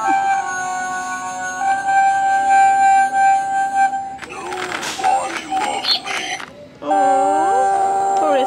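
Animated Halloween skeleton decoration playing its sound effects: a tinny electronic tune of long held notes, then a noisier stretch with clatter and a warbling voice, then swooping, wavering spooky tones near the end.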